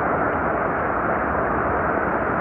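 Steady rush of the North Fork of the Virgin River running fast and shallow over rocks.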